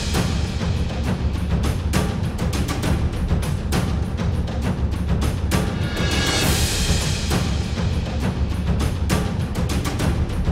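Background music with a steady drum beat and a heavy low end, building into a swelling rise about six seconds in.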